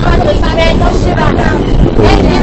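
Subway train running with a steady low rumble under people's loud voices.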